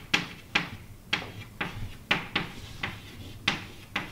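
Chalk striking and tapping a blackboard while words are written by hand: about ten sharp, irregular clicks a few tenths of a second apart.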